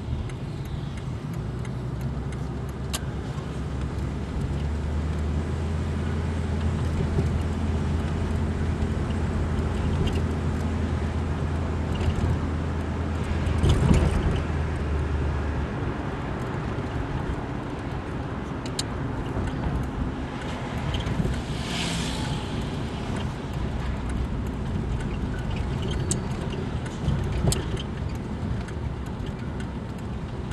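1977 Plymouth Fury's engine idling with the car standing still, a steady low hum that is fuller in the first half and eases a little after the middle. There is a louder moment about halfway through and a short hiss about two-thirds of the way in.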